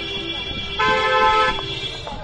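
Car horns honking from a passing motorcade: one long, steady horn note fading out, then a second, higher horn sounding abruptly for under a second, starting a little under halfway through.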